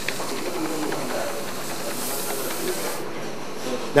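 Steady hiss of laboratory background noise. The hiss thins out about three seconds in to a quieter room tone.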